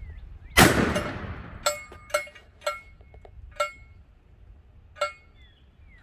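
A single shot from a Benelli 12-gauge shotgun about half a second in: a Duplex Kaviar frangible slug fired into a steel target ten feet away, the blast and the hit on steel merging into one sharp report that rings off over about a second. Five short, ringing metallic clinks follow, spread over the next few seconds.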